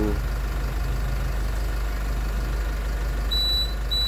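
Automatic tyre inflator beeping: a high beep starting near the end and repeating evenly, the signal that the tyre has reached the set 33 psi and the hose can be disconnected. Under it, a steady low hum and hiss.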